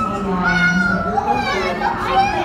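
Children's voices and indistinct chatter from a small crowd, with no clear words.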